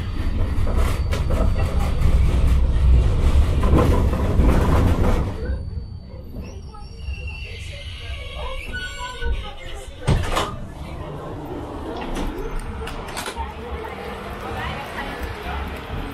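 Inside a moving tram: the low rumble of the running tram, loud for the first five seconds or so, then dropping away as it slows. A sharp knock comes about ten seconds in.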